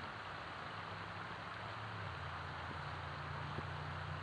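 Steady outdoor background noise: an even hiss over a low hum that shifts pitch about halfway through.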